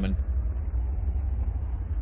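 A steady low rumble with no other clear sound over it.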